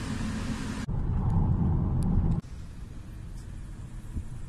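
Road and engine noise of a car driving, heard from inside the cabin. It changes suddenly twice: a steady hiss for about the first second, then a louder low rumble, then a quieter low rumble from about two and a half seconds in.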